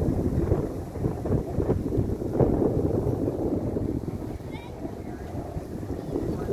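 Wind buffeting a phone's microphone: a steady, gusting rumble with faint voices in the distance.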